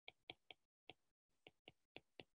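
Near silence broken by faint, irregularly spaced clicks, about four a second: a stylus tapping on a tablet screen as numbers are handwritten.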